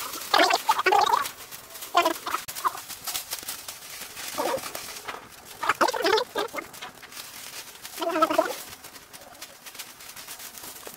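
A bird clucking in short bursts, about five times, over the crackle and rustle of vines and brush being pulled from a brick wall.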